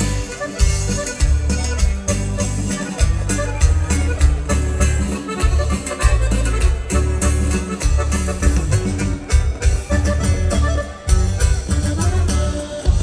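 Norteño band playing an instrumental passage without vocals: accordion leading over a steady, pulsing bass line and percussion.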